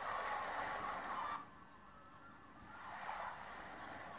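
Seaside background ambience: a steady wash of surf, dropping away for about a second in the middle and then coming back.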